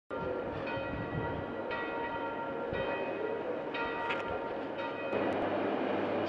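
Bell-like ringing tones struck about once a second, each stroke dying away slowly. They stop about five seconds in, leaving a low steady hum.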